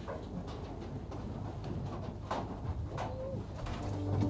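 Birds calling, with scattered small clicks and knocks over a low steady hum.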